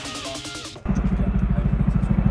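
Background music for under a second, then an abrupt cut to a helicopter passing overhead, its rotor giving a loud, low, fast pulsing.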